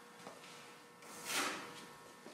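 Soft handling noise over quiet room tone: a brief swish about halfway through as the detached oven door is picked up, with a faint tick near the start.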